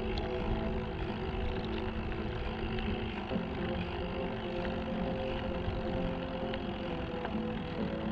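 Wind rumbling on a bike-mounted action camera's microphone during a slow ride, with steady held tones over it that shift in pitch about three seconds in.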